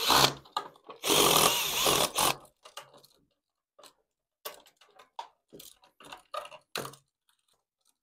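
Green Hitachi cordless drill/driver running in two short bursts, a brief one at the start and a longer one of about a second and a half, spinning a terminal screw on a wall outlet so the wires can be swapped. After that come light clicks and rustles of the outlet and its wires being handled.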